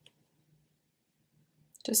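Near silence, with a brief faint click right at the start; a woman's voice resumes near the end.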